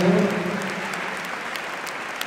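Audience applauding: steady clapping from a large crowd.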